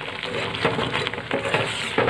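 A metal spoon stirring and scraping a thick, bubbling sugar-syrup barfi batter in a pan, in repeated irregular strokes over the sizzle of the boiling mixture. The batter is cooked down thick and nearly ready to set.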